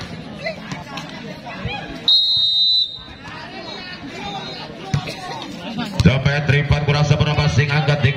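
A referee's whistle sounds one steady, shrill blast of just under a second, about two seconds in, over spectator chatter. A man's voice talks from about six seconds on.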